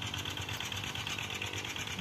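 Walk-behind two-wheel tractor engine running steadily while ploughing, heard from afar as a rapid, even mechanical beat.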